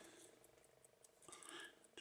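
Near silence: room tone, with one faint, brief sound about one and a half seconds in.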